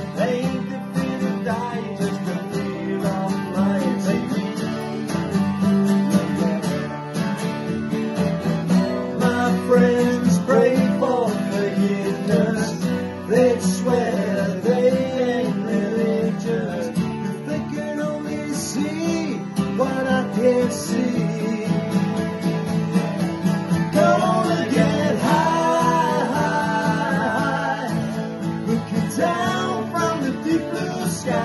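Three acoustic guitars strummed together, one of them a twelve-string, with male voices singing a wordless melody over them in a live acoustic rock performance.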